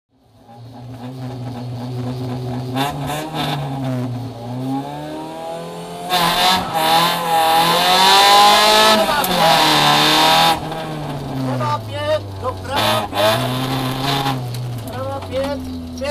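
Rally car engine heard from inside the cabin, revving and accelerating hard, its note climbing and dropping back at each gear change. It fades in over the first second or two and is loudest for about four seconds in the middle.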